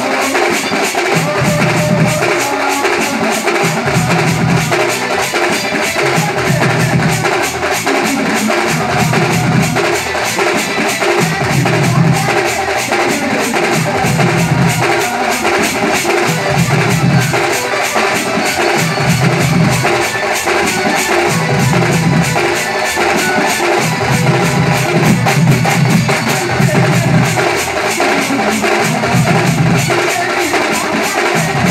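A drum troupe playing slung drums together in a fast, driving rhythm, over loud music, with a deep beat recurring about every second and a half.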